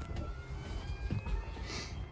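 Rumbling handling noise from a camera being held and moved by hand, with a sharp click at the start and a brief hiss near the end.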